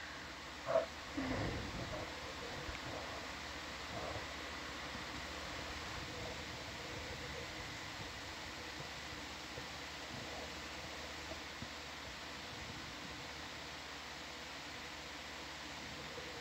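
Low, steady hiss of background noise (room tone on the audio feed), with a couple of brief soft sounds in the first two seconds.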